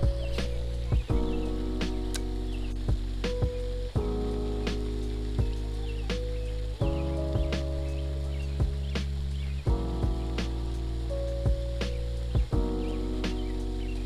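Background music: held synth chords that change about every three seconds, with scattered sharp ticks over them.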